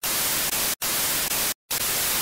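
Television static: a loud even hiss that starts suddenly and cuts out briefly twice.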